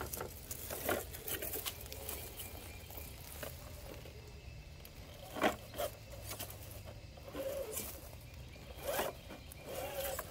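Electric RC rock crawler clawing up boulders: short bursts of motor and gear whine as the throttle is worked, with tyres scraping and clicking on rock. There is a sharp knock about five and a half seconds in.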